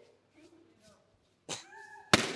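Near silence for most of the time. About one and a half seconds in comes a short sharp pop, then a high, drawn-out vocal 'ooh' held on one note.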